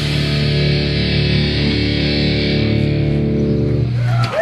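A thrash metal band's distorted electric guitar holding one final chord that rings out steadily with no drums, then is cut off abruptly at the very end: the close of the song.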